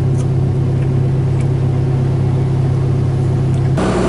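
Excavator's diesel engine running at a steady speed, heard from inside the cab as an even low hum. The engine sound changes abruptly just before the end.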